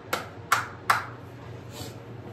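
A small plastic cup of acrylic pour paint tapped down on the table three times in quick succession, knocking air bubbles out of the paint.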